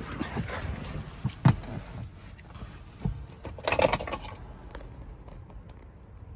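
Handling and movement noise inside a car cabin: rustling, with a sharp click about a second and a half in and a short breathy rustle near four seconds, then a few faint ticks.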